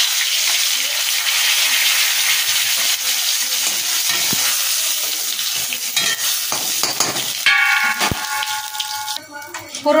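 Whole spices (bay leaves, dried red chillies and cumin seeds) sizzling steadily in hot mustard oil in a metal kadai, with a spatula clicking and scraping against the pan as they are stirred. About seven and a half seconds in, a steady tone sounds for under two seconds.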